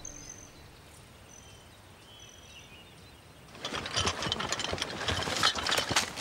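Quiet outdoor ambience with a few short, high bird chirps. About three and a half seconds in, a dense clatter of many hurried footsteps and rattling gear sets in, from a group of soldiers running through brush.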